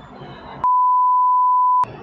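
A single steady, high-pitched electronic bleep lasting a little over a second, edited in over the interview to censor a word. All other sound drops out completely while it plays.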